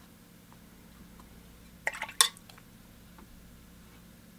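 Three quick, hard clicks about two seconds in, the last the loudest: a watercolour paintbrush knocking against a hard surface while paint is flicked and picked up.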